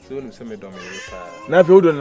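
A person's voice speaking in drawn-out tones whose pitch wavers, loudest about one and a half seconds in, over faint background music.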